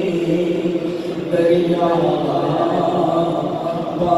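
A man chanting a naat unaccompanied into a handheld microphone, holding long drawn-out notes, with a new phrase starting a little over a second in.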